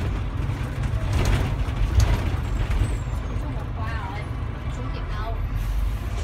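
City bus engine and road noise heard from inside the bus as it rolls along, a steady low rumble with the odd rattle or knock, the loudest about two seconds in. Voices can be heard faintly in the background.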